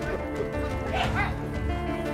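Background music score with held tones and a steady low pulse, broken about a second in by a short high cry that rises and falls in pitch several times.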